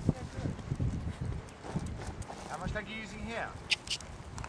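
Horse's hoofbeats thudding on a soft arena surface as it is ridden past, with faint voices in the background and two sharp clicks near the end.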